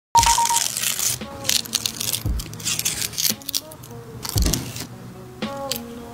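Dry, papery garlic skin crackling and tearing as a metal pick prises it off the bulb: a run of short, crisp rustles, with a few dull knocks of the bulb on the wooden board.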